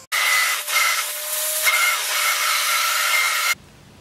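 A small electric motor runs steadily with a loud hiss and a thin whine, starting and stopping abruptly after about three and a half seconds.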